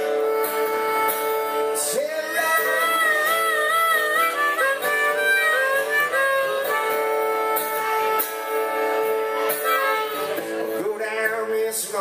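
Harmonica solo, long held notes with wavering and bent pitches, played live over two acoustic guitars strumming.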